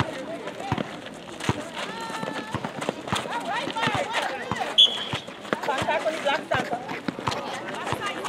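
Netball players calling out to each other on an outdoor court, with quick footsteps and shoe scuffs on the asphalt. A brief high-pitched chirp sounds about five seconds in.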